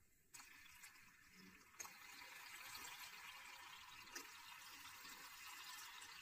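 Near silence: a faint hiss with two soft ticks, about two and four seconds in, as liquid mercury is poured into a dish of liquid nitrogen.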